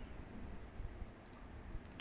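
Two faint, sharp clicks from computer input (keys or mouse) in the second half, over low background room rumble.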